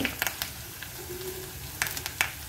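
Sliced garlic, ginger, green chilli and curry leaves sizzling quietly in hot coconut oil in a pan, with a few sharp clicks near the start and near the end.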